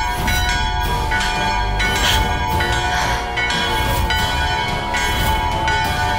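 Hanging brass temple bells rung by hand, struck again and again so their ringing tones overlap into a continuous clangour.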